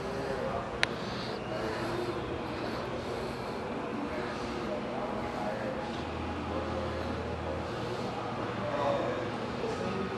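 Indistinct background voices over a steady low hum, with one sharp click just under a second in.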